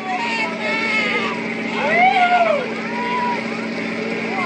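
Onlookers' voices calling out and exclaiming, with one long drawn-out shout about two seconds in, over the steady hum of the ferry's idling engine.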